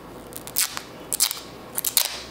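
Clear packing tape and its red holder being handled, with a few short crackles of tape and plastic: one about half a second in, one just past the middle and a cluster near the end.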